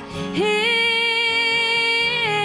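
A female country singer holds one long sung note, sliding up into it about half a second in, accompanied by her strummed acoustic guitar.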